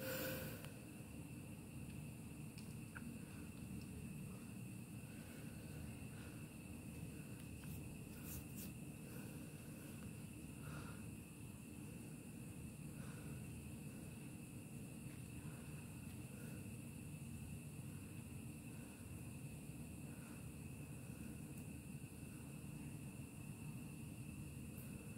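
Faint steady background hum with a thin steady high whine above it and a few soft scattered blips; a brief louder sound right at the start.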